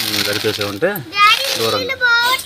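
People's voices talking, among them a high-pitched child's voice about halfway through.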